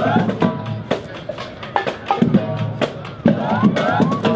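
High school marching band playing as it marches past: saxophones and brass, including sousaphones, sound held notes over drum strikes.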